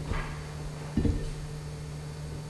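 Steady low hum and hiss of room noise, broken by two dull thumps about a second apart, the first with a brief swish.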